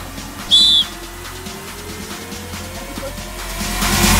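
A single short whistle blast about half a second in, the signal for the free kick to be taken, over quiet background music. A rising swell in the music builds toward the end.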